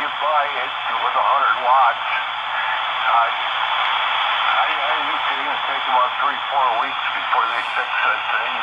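R-2322/G military HF receiver tuned to 7.183 MHz on the 40-metre band, playing weak single-sideband voice signals over a steady hiss of band noise. The audio is narrow, with nothing above about 3.5 kHz.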